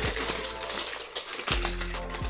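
Foil food wrapper crinkling and crackling as it is unwrapped by hand, over quiet background music with a steady beat.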